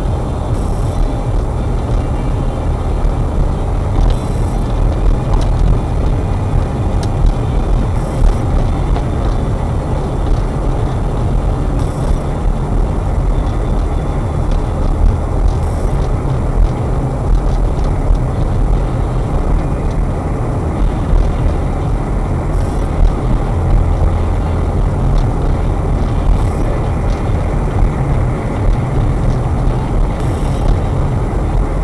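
Car's engine and tyre noise heard from inside the cabin while driving: a steady deep rumble, with a faint hiss coming back about every four seconds.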